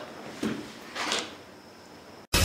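Two short knocks and rustles of office chairs as people get up from a table, about two-thirds of a second apart.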